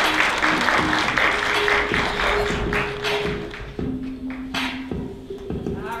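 Audience applauding over background music, the clapping dying away after about three seconds while the music's held notes play on.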